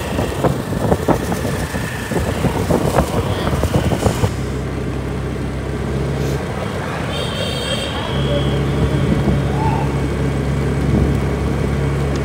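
Plastic sheeting crinkling as a bundle of kites is handled. About four seconds in it gives way to a motor scooter's engine humming steadily as it rides, with a short break in the hum near the middle.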